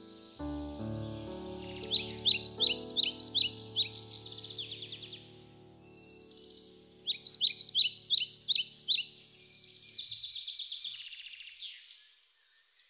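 Two quick runs of loud, evenly repeated bird chirps, a few notes a second, over background music of held chords that stops near the end.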